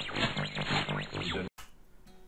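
Channel intro sound effect: a dense, processed voice-like sound that cuts off abruptly about one and a half seconds in, leaving faint near-silence.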